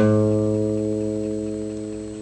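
Acoustic guitar: a single low note picked right at the start and left to ring, fading slowly.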